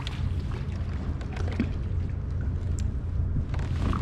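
Steady low rumble of wind on the microphone, with a few faint clicks and light water sounds, while a hooked sheepshead is reeled to the kayak and swung out of the water.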